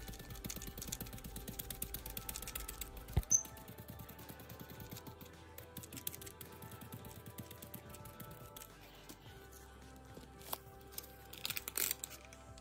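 Quiet background music over quick soft taps of a paint sponge dabbing black paint through a stencil onto a painted wood floor, with one sharper knock about three seconds in.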